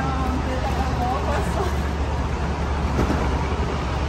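Steady low traffic and engine rumble from vehicles at an airport curbside, with faint voices talking.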